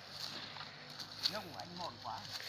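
Faint, distant men's voices, with a couple of short calls about a second and a half in.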